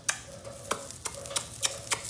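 Blown kisses: a quick run of about six sharp lip-smacking kiss sounds, with a faint hum between them.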